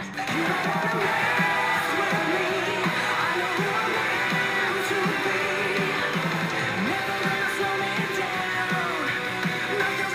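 Pop-rock band music: electric guitar over bass and drums, with a female singer.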